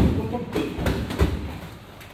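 Boxing gloves and kicks thudding on handheld strike pads in a pad-work drill: several sharp hits, the loudest at the start, then a few more within the first second and a half.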